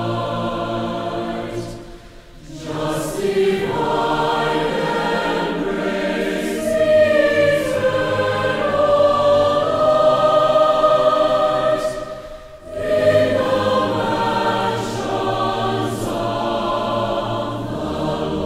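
Choir singing a slow piece in long held notes, with brief breaths between phrases about two seconds in and again just past the middle.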